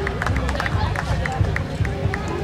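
Folk dancers' feet stepping and stamping on a stage floor, a quick, uneven run of knocks several times a second, with crowd voices alongside.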